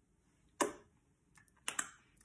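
Lips smacking together to spread freshly applied lipstick: one louder smack about half a second in, then a few lighter smacks and clicks near the end.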